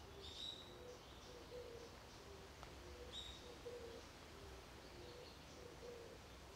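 Faint outdoor ambience with birds: a few short, high chirps and a low call repeated about twice a second, over a soft steady rumble.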